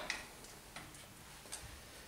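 A few faint, irregular light metallic clicks as hand tools work on the Schaublin 102 lathe's vertical slide and milling spindle during setting up.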